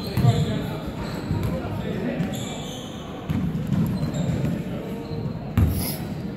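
A basketball bouncing on a hardwood gym floor amid players' indistinct voices, echoing in a large hall, with one loud thud near the end.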